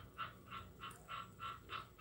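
An animal calling in the background: a rapid, even series of short, faint pulses, about five a second.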